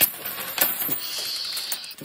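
A handful of mixed coins (pennies, nickels, dimes, quarters and half dollars) dropped onto a sheet of paper on a wooden tabletop, clattering and clinking as they land. Then a steady high ringing for most of a second as the last coins spin and settle.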